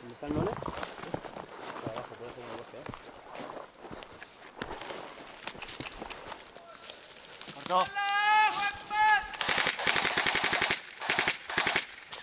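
Airsoft electric rifles firing on full auto: a long rapid burst about nine and a half seconds in, followed by several short bursts. Before that only faint scattered clicks and rustles.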